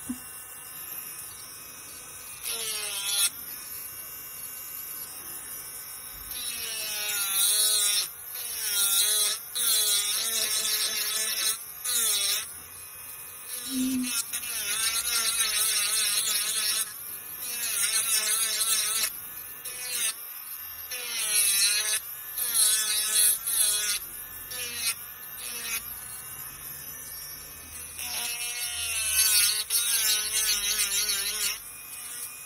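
Electric nail drill with a small bit grinding at the cuticle area of a hard-gel nail. It gives a high motor whine whose pitch wavers up and down as the bit is pressed on and eased off, in stretches with short lulls between them.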